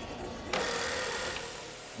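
Electric sheep-shearing handpiece running steadily, coming in about half a second in as it shears wool.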